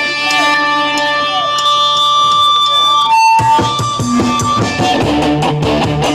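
Live punk band on stage. An electric guitar chord is held and left ringing for about three seconds, then after a short break the full band comes in with drums, bass and guitar.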